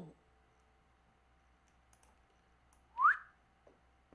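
One short whistle that rises quickly in pitch, about three seconds in. A few faint clicks, like a computer mouse, come before and after it.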